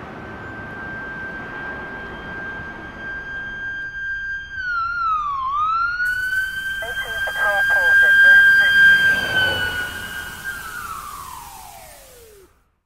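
A siren holding one steady high pitch, dipping briefly about five seconds in and recovering, then sliding down in pitch as it dies away near the end.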